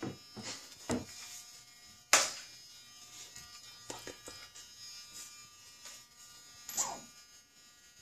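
Faint, steady electric buzz from the Atomik Barbwire RC boat's brushless motor, the boat lying capsized in bathtub water. The buzz is overlaid by a sharp knock about two seconds in, a few softer clicks, and a brief splashy burst near the end.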